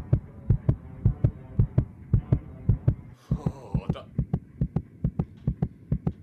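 Heartbeat sound effect in a horror soundtrack: low thuds about twice a second over a low steady drone. About three seconds in there is a brief dropout and a short harsh distorted screech, and then the beats quicken to about three a second.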